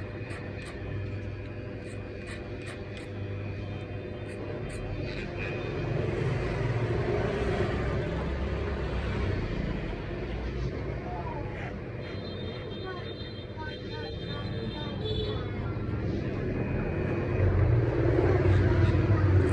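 Corded electric hair clippers buzzing steadily as they cut short hair over a comb, the hum swelling and easing as the blade works through the hair.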